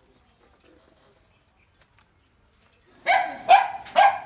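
A dog barking three times in quick succession, about half a second apart, near the end; before that only faint background sound.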